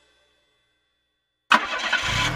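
Silence, then about a second and a half in, a cartoon car engine-starting sound effect begins abruptly and loudly.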